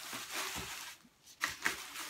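Thin plastic shopping bag rustling and crinkling as hands rummage in it. After a short lull near the end come two sharp clicks.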